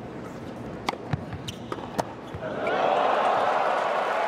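Tennis ball struck by rackets during a short rally on an indoor hard court: several sharp pops in the first half, the loudest about two seconds in. Crowd cheering and applause then rise from about halfway.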